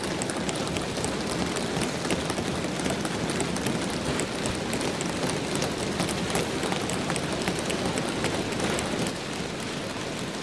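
Parliament members thumping their desks in applause at the end of a speech: a dense, continuous patter of many hands on wooden desks, easing off slightly about nine seconds in.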